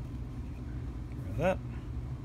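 Steady low background hum, with one short spoken word about one and a half seconds in.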